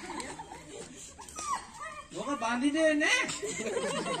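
Whimpering, dog-like cries, starting about a second in and growing louder and higher-pitched, with a rising whine near the end.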